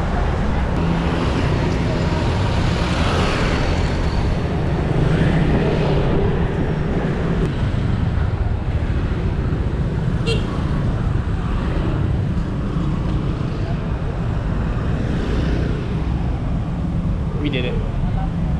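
Busy city street traffic: cars and motorcycles passing close by in a steady roadway rumble.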